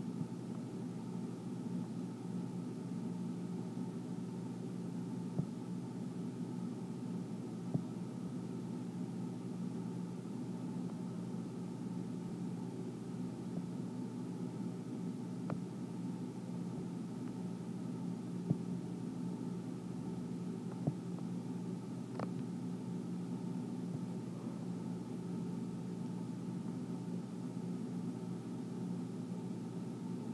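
Steady low background hum of room noise, with a few faint, brief clicks scattered through it.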